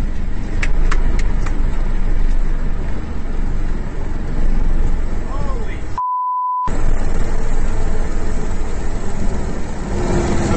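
Light aircraft's propeller engine running with a steady heavy rumble and wind on the microphone as the plane rolls along a road after landing. About six seconds in, a single steady beep of well under a second replaces all other sound: a censor bleep.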